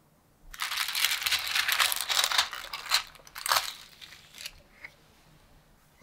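Plastic film lid being peeled off a microwaved ready-meal tray: dense crinkling and tearing starting about half a second in, lasting some two and a half seconds, then thinning to a few fainter crackles before it stops.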